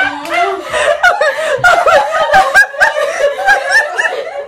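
Several women laughing together, their voices overlapping in bursts of giggles and chuckles.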